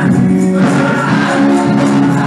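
Gospel worship music: a choir singing sustained chords over instrumental accompaniment, with percussion.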